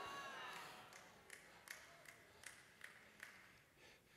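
Near silence: room tone in a large hall, with a faint voice-like tone fading out at the start and a run of faint ticks, about two or three a second, in the middle.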